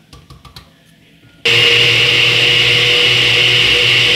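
A countertop blender with a glass jar, after a few light clicks, switches on abruptly about a second and a half in and runs at a steady high whine, puréeing garlic cloves in salted water.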